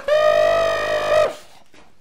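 A man's voice holding one long, high falsetto note as a mock fanfare after a spoken 'drum roll', cutting off about a second and a quarter in, followed by quiet room tone.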